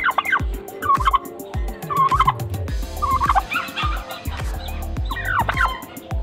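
A male domestic turkey (tom) gobbling again and again, short rapid warbling calls about a second apart, with a longer run of gobbles about three seconds in and another near the end.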